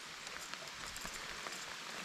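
Light rain falling on a river's surface: a faint, steady hiss with a few scattered ticks of single drops.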